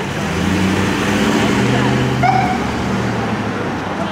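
Police van driving past close by and pulling away, its engine hum swelling and then easing off.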